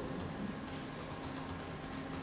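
Faint room tone through a live microphone: a low, even hiss with a few light ticks.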